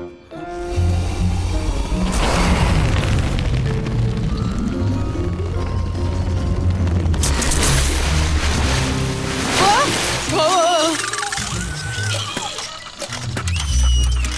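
Cartoon soundtrack music under a long, loud rushing and rumbling sound effect of water pressure building in a garden hose as it swells into a bulge. About ten seconds in come wavering, warbling sounds.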